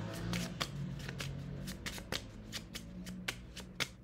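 A Moroccan playing-card deck being shuffled by hand: a quick, irregular run of crisp card snaps, several a second, growing sparser and quieter near the end.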